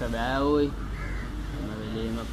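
A crow caws once, loudly, near the start, over low voices.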